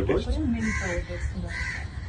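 A bird giving hoarse, repeated calls about once a second, over low talk.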